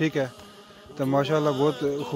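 A voice with smooth, drawn-out, gliding pitch, briefly at the start, then a pause, then continuing from about a second in.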